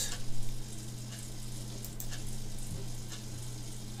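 Steady low hum and faint hiss of the recording setup's background noise, with a few faint computer-mouse clicks.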